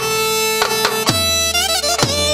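Dance music from a band: a melody instrument holds a long note and then ornaments it with quick wavering turns, over regular drum hits.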